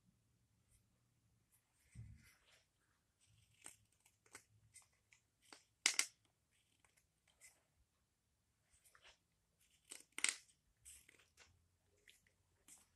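Carving knife paring a wooden ladle: a run of short, separate slicing cuts, with two sharper cuts about six and ten seconds in and a soft bump about two seconds in.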